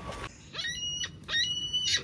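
Gulls calling as they take off from the grass: two high, pitched calls of about half a second each.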